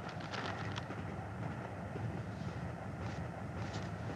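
Steady low rumble of a moving passenger train heard from inside a compartment, with a few faint clicks.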